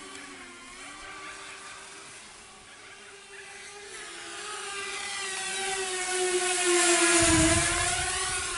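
Walkera F210 racing quadcopter's motors and propellers whining in flight, the pitch wavering as the throttle changes. The whine swells as the quad closes in and passes about seven seconds in, its pitch dipping as it goes by, with a brief low rush of air.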